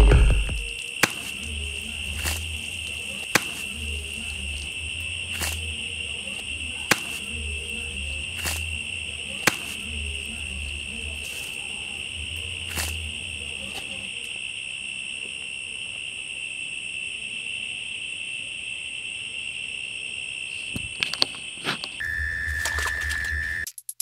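Eerie film soundtrack: a steady high-pitched drone with a slow, pulsing low beat that fades out about halfway through, and sharp clicks every second or two. Near the end the drone cuts off, a different steady tone sounds briefly, and then there is a short drop to silence.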